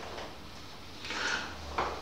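Quiet room tone in a pause between a man's sentences, with a faint breath drawn in a little past a second in and a short click near the end, just before he speaks again.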